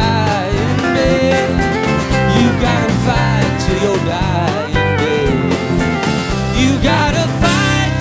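Live acoustic performance: an acoustic guitar strummed steadily under a man's singing voice.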